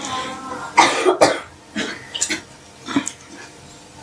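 A man coughing several times in short bursts, the two strongest close together about a second in, then a few weaker ones.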